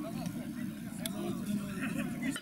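Voices of players talking and calling out across an outdoor football pitch, with a single sharp click about a second in.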